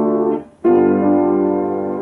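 Grand piano played solo in an improvisation: a held chord is let go about half a second in, leaving a short near-gap, then a new chord is struck and left to ring.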